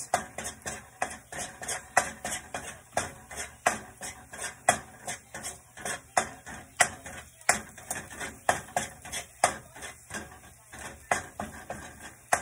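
A metal spoon scraping and tapping around a stainless steel wok in a quick, even rhythm of strokes, stirring minced garlic sautéing in olive oil. The garlic is kept moving so that it does not burn.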